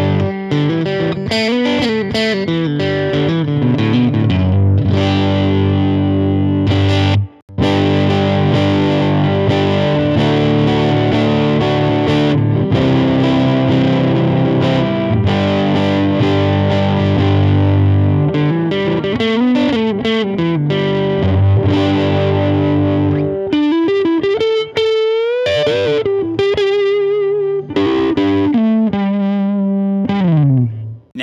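Mesa Boogie California Tweed 20-watt tube combo with a 10-inch speaker, set to 1 watt with the gain high and the EQ flat, giving an overdriven tube tone with its built-in reverb. Played first on a Fender Telecaster, then on a Gibson ES-335 after a short break about seven seconds in. Chords and riffs give way near the end to single-note lead lines with bends and vibrato.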